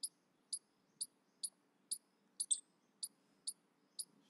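Computer mouse clicking: light, sharp clicks about two a second, slightly uneven, with a quick double click about halfway through, over near silence.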